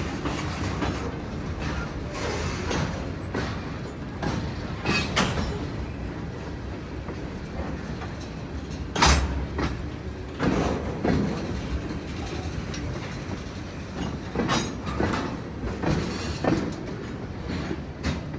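Freight cars (covered hoppers and tank cars) rolling past over the grade crossing, with a steady rumble and irregular wheel clacks and bangs over the rail joints and crossing. The loudest bang comes about nine seconds in.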